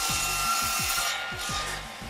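Circular saw cutting through a timber beam: a loud rasping whine that eases off a little after about a second.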